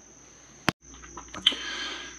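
Quiet room tone with a faint steady high whine, broken about two-thirds of a second in by a single sharp click and a short dropout where the recording cuts. After it come a few light clicks and a soft rustle.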